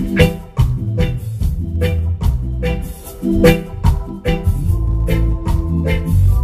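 Live reggae band playing a heavy bass line under a steady beat, with sharp strokes about twice a second and electric guitar.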